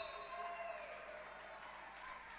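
Faint court sound of a handball game in a sports hall, with a few faint drawn-out tones that slowly fall in pitch and fade away.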